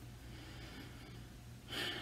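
A man's quick in-breath near the end, a short airy rush with no voice in it, over quiet room tone with a low steady hum.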